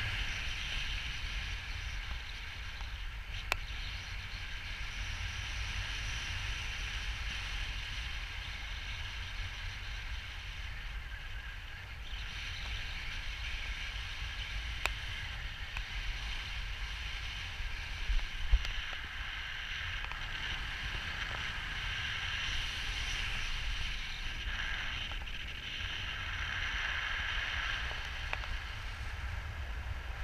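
Steady rush of air over a camera's microphone during a paraglider flight: a deep rumble with a hissing band above it, and a few faint clicks.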